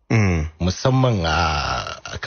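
A man talking, in low voiced stretches with long drawn-out vowels.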